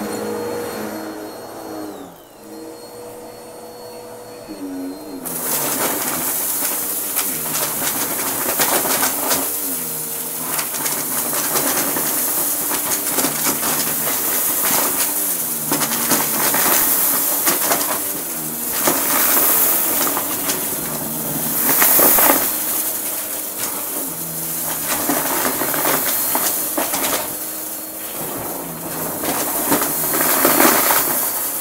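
Bagless upright vacuum cleaner running, its motor hum dipping in pitch about two seconds in. From about five seconds in it is pushed over a rug strewn with gritty debris and sucks it up with dense, crunchy rattling and crackling over the motor.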